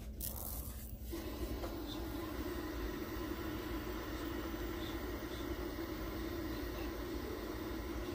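Symphonic CRT TV/VCR combo switching on: a brief crackle, then from about a second in a steady hiss of static with a low hum from its speaker, the set tuned to a channel with no signal.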